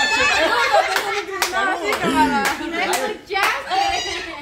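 Several people laughing and talking together, with about six sharp hand claps mixed into the laughter from about a second in.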